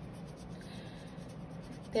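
Paintbrush stroking acrylic paint onto mixed-media paper: a faint, scratchy brushing, strongest about half a second to a second in.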